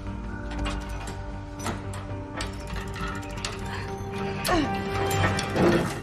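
Ratcheting clicks and grinding of a mechanical lock mechanism working after a key is turned, over sustained orchestral film music. A falling tone sounds about four and a half seconds in.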